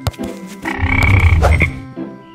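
A low, buzzy, croaking comic sound effect lasting about a second, over light background music.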